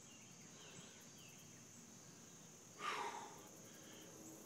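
Crickets chirring steadily in a high, even band. About three seconds in, a man breathes out hard once, winded after a set of push-ups.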